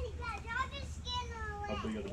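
A young child's high-pitched voice calling out, with an adult starting to speak near the end.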